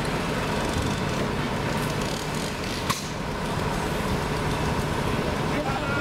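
A fire-service water tanker's diesel engine running steadily at idle, with a single sharp click about halfway through.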